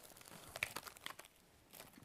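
Faint rustling and crinkling of packaged items being handled in a pouch of an individual first-aid kit (IFAK), with a few light ticks.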